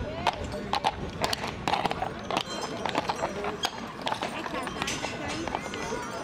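Shod hooves of heavy draft horses striking cobblestones: an irregular clip-clop of sharp knocks, several a second, from more than one horse, over crowd chatter.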